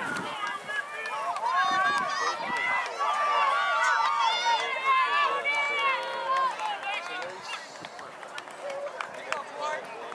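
Spectators shouting and cheering on runners in a track race, many voices overlapping. The shouting is loudest in the middle and thins out after about seven seconds.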